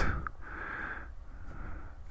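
Motorcycle radiator cooling fan, a larger OEM electric fan, running steadily: a constant rush of air with a low hum underneath, the fan pulling air through the radiator.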